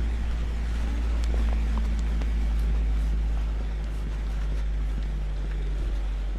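A motor vehicle's engine running steadily, with a low rumble of wind on the microphone.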